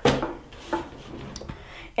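Paperback books being handled and shifted by hand: covers sliding and rubbing against each other, with a couple of light knocks.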